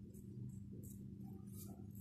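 Quiet room tone with a steady low hum, and a few faint, soft scratches of a fine paintbrush stroking acrylic paint onto a hard jacaranda seed pod.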